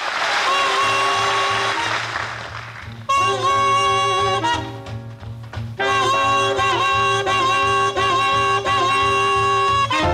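Swing-style jazz band music: horns hold long notes over a steady low beat, with a short lull near the middle. It opens with a hissing swell of noise in the first two seconds.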